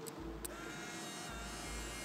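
Instant camera firing: a shutter click about half a second in, then its small motor whirring steadily for about a second and a half as it ejects the print.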